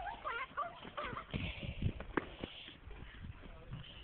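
A red-nosed pit bull whining faintly in short wavering high calls during the first second, with scattered low thumps and a sharp click about two seconds in.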